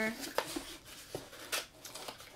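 Small cardboard product box being opened by hand: several short scrapes and clicks as the flaps are pulled apart.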